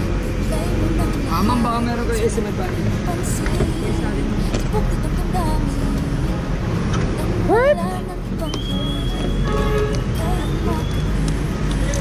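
Voices and background music over a steady low rumble, with a pitched tone rising sharply about seven and a half seconds in.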